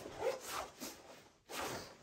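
Faint rustle of a snowmobile mono suit's shell fabric as a side vent zipper is worked, in several short strokes with a brief pause near the end.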